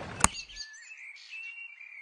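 Faint outdoor birdsong: thin, high chirps and short whistled notes. A single sharp click comes just after the start.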